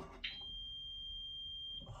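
A single long electronic beep: one steady high-pitched tone that starts about a quarter second in, holds for about a second and a half, and cuts off sharply.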